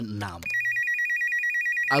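Electronic telephone ring: a high, rapidly warbling trill that starts about half a second in and runs for about two seconds.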